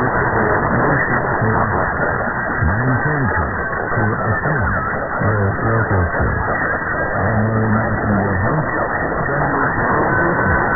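Long-distance medium-wave AM broadcast from WFME 1560 kHz New York, received on a software-defined radio: music with a voice coming through a constant layer of static and hiss. The sound is muffled, with nothing above the narrow AM receive filter.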